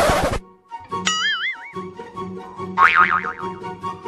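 Cartoon comedy sound effects laid over background music: a short whoosh at the start, a wobbling boing about a second in, and a quick warbling zigzag sound near three seconds, over a steady pulsing beat.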